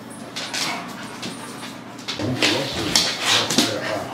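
A German shepherd and a black dog play-fighting: scuffling paws and bodies first, then from about halfway a louder run of dog whimpers and short vocal noises as they wrestle.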